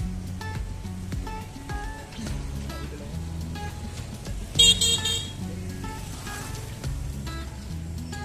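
Background music runs throughout over street traffic. A little after halfway, a vehicle horn gives a short, loud, high-pitched toot.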